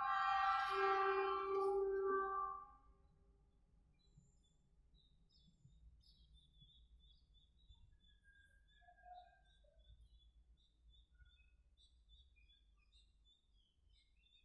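A loud, steady pitched tone with several overtones lasting about two and a half seconds, then small birds chirping in quick series of short high notes.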